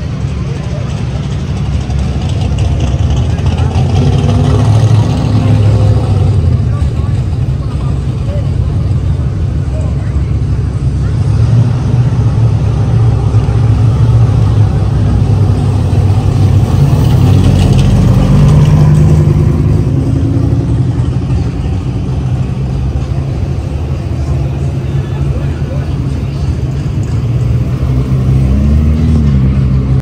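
Sports car engines idling and rolling slowly, a deep steady rumble, with brief rises in engine speed a little past halfway and again near the end.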